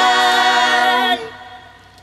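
Several women's voices singing one long held note together in harmony in a Vietnamese pop ballad, with little accompaniment heard. The note ends a little over a second in and is followed by a short lull.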